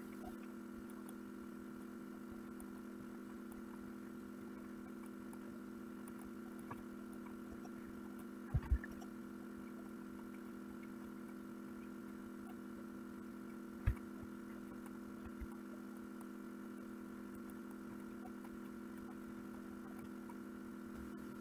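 Faint steady electrical hum of the recording setup, with a few soft knocks: two close together about eight and a half seconds in and another near fourteen seconds.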